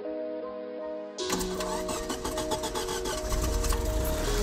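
A Lada 2105's carbureted four-cylinder engine starts about a second in and keeps running with a fast, even clatter. It is fed on gasoline mixed with printer ink from a plastic bottle piped to the carburetor, and background music plays throughout.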